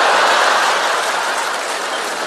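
Audience applauding in reaction to a punchline: a loud wash of clapping that peaks at the start and slowly dies down.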